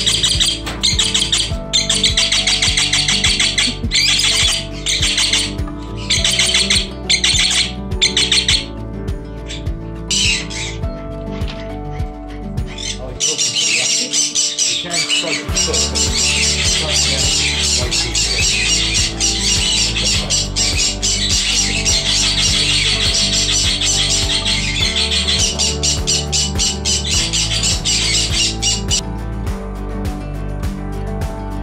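Background music with steady bass notes throughout. Over it, parrots squawk repeatedly in the first nine seconds or so, and a dense, high chatter fills the second half.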